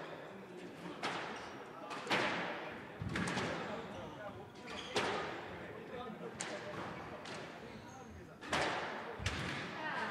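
Squash rally: the ball is struck by rackets and smacks off the court walls about once a second, each sharp hit echoing in the court.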